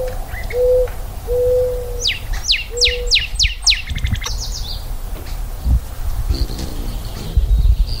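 Birds calling outdoors: a low hooting coo repeated four times, then a quick run of about six high, sharply falling whistles and a short high trill from a songbird.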